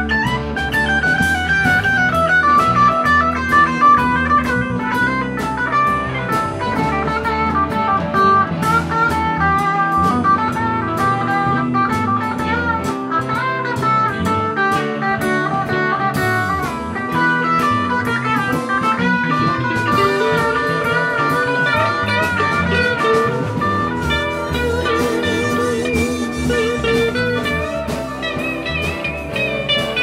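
Live electric band playing an instrumental passage with no singing: electric guitars take bending lead lines over keyboards and drums. Near the end a guitar line wavers with vibrato.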